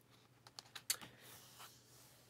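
Faint clicks and light taps of a hand handling the paper pages of a large hardcover art book, a handful of short ticks with the sharpest about a second in.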